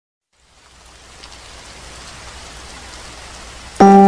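A steady sound of rain fades in over the first second and holds. Near the end a loud, sustained keyboard chord comes in, starting the song's music.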